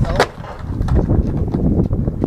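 Skateboard on concrete: a sharp clack just after the start, then a low rumble of wheels and scattered rattling clicks.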